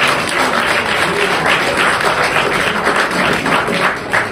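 Audience applauding: dense, steady clapping from many people.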